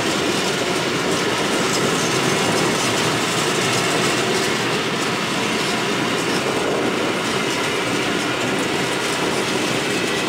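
Freight train of open coal gondola wagons rolling past at speed: a steady rumble of wagon wheels on the rails, with faint repeated clicks of wheels over the track, unbroken through the whole stretch.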